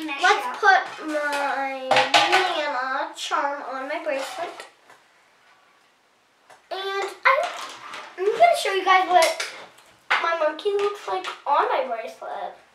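A young girl's voice making long, drawn-out sounds that carry no clear words, broken by a silence of about two seconds in the middle.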